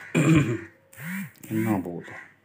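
A person clearing their throat loudly near the start, followed by two short calls that rise and fall in pitch.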